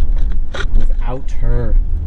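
Steady low rumble of a vehicle's engine and road noise heard inside the cabin while driving, under a man talking.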